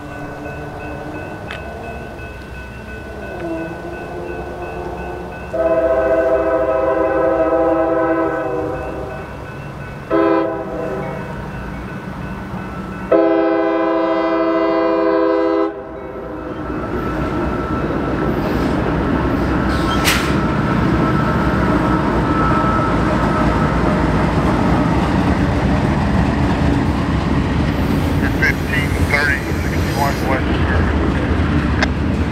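CSX freight locomotive's chorded air horn sounding three blasts, long, short, long, as the train approaches. After that the double-stack freight train rolls by with a steady, building rumble of wheels on rail and one sharp clank.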